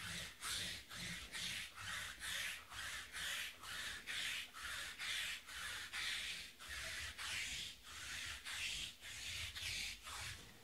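Sticky lint roller rolled back and forth over a felt mat, a repeated rasping tear of the adhesive sheet lifting off the fabric, about two strokes a second, stopping right at the end.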